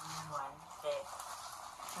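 A woman's voice in short, unworded murmurs, over a light rustle of a sheer organza bag being slid off a rolled canvas.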